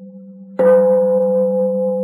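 A Buddhist bowl bell struck once about half a second in, its tone ringing on steadily. Before the strike, a quieter steady low tone.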